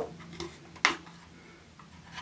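A sharp plastic click from the cap of a plastic shower gel bottle being handled, with a fainter tap just before it, about a second in.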